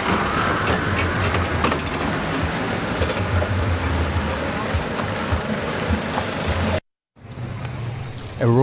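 Road traffic noise: vehicles running and passing, with a steady low engine hum. It cuts off abruptly about seven seconds in, and fainter street noise comes back.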